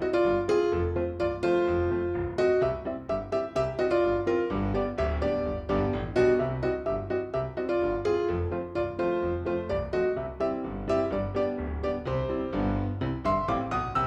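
Background instrumental music led by piano: a steady stream of quick notes over a bass line.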